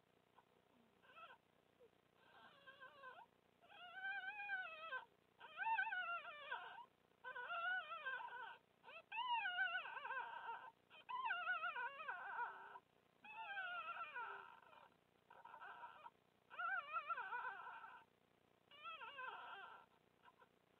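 Newborn red fox cubs whimpering in the den: a run of high, wavering cries about a second long each, repeated every second or two, while the vixen licks them clean.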